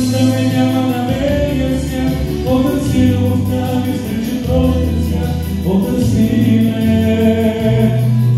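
A man singing into a handheld microphone over a recorded pop backing track, with sustained notes and a bass line that changes note every second or so.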